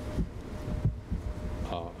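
A few soft, low thumps in the first second or so over a steady low hum, then a man's hesitant 'uh' near the end.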